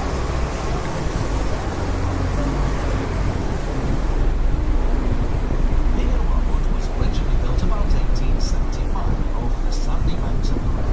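Open-top tour bus driving slowly, heard from its open upper deck: a steady low rumble of engine and road noise, growing a little louder about halfway through.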